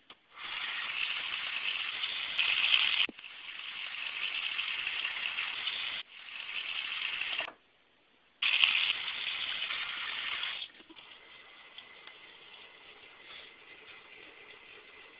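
Water running from a bathroom tap and splashing in the sink during face washing, in several loud stretches that start and stop abruptly, then a fainter steady flow for the last few seconds.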